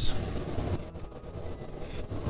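Milk pouring from a glass measuring cup into a hot skillet of browned sausage and flour roux: a steady liquid hiss that fades out before a second in, leaving only faint noise.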